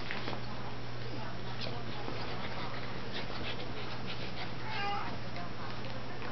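Small dogs playing on a couch, with scattered light clicks and rustling and one short, high-pitched whine from a dog about five seconds in.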